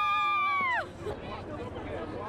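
A long, high-pitched vocal cry held on one note that drops away in a falling glide just under a second in, followed by the noise of a crowd.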